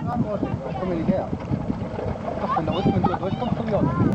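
Indistinct voices of several people talking over one another, with a low rumble of wind on the microphone.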